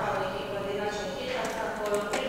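Indistinct voices talking, with a couple of faint clicks near the start and near the end.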